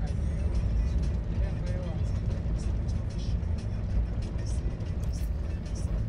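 A motor vehicle running with a steady low rumble and road noise, with faint music underneath.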